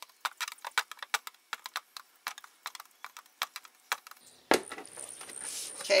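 Quick light clicks, about five a second, of a hot electric soldering iron tip tapping and melting through a thin plastic shoebox lid to make drainage holes. Near the end a knock and a brief hiss as the plastic lid is handled.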